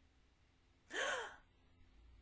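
A single short gasp, about half a second long: a breathy voiced intake whose pitch rises and then falls.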